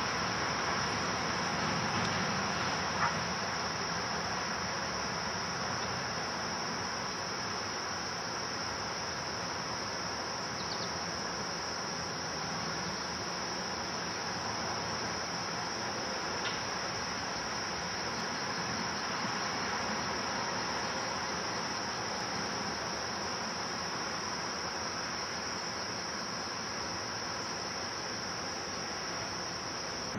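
Steady chorus of field crickets, one continuous high-pitched trill without a break, over a steady low background noise.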